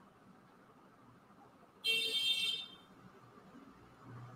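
A single short, high-pitched tone lasting under a second, about two seconds in, amid near silence.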